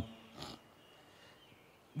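A pause in a man's speech into a microphone: the end of a hummed 'um' at the start, then a short breath about half a second in, then low background hiss until he speaks again.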